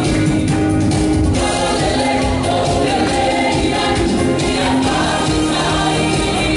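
Music with several voices singing together, a song in a choir or gospel style, loud and unbroken throughout.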